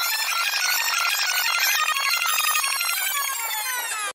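A shrill, jangling ringing made of many high bell-like tones, pulsing rapidly, likely an added ringtone-like sound effect. It cuts off suddenly at the end.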